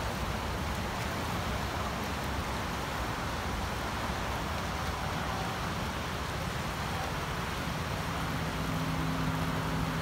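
Flash-flood water of a debris flow rushing down a creek channel: a steady rushing of churning water. A steady low hum joins about eight seconds in.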